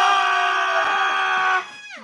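A person's long drawn-out shout of "no!", held on one high pitch and then dropping away about a second and a half in.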